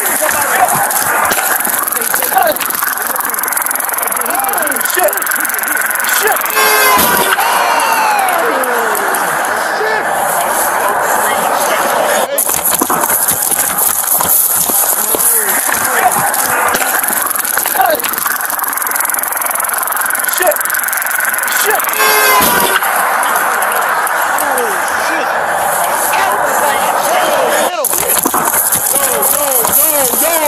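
Police body-camera audio played back from a phone clip: a loud, hissy, distorted din with indistinct voices. The same stretch plays twice, about fifteen seconds apart, as the short clip loops.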